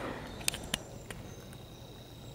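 A few light snaps and ticks of footsteps on dry twigs and leaf litter, two of them close together about half a second in, over a quiet woodland background with a faint steady high tone.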